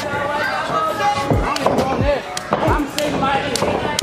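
Wrestlers' blows landing in the ring: about four dull thuds well under a second apart, with fans shouting throughout.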